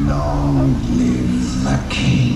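Fountain show soundtrack over loudspeakers: music with a voice in it, opening on held notes for under a second and then moving through shorter ones.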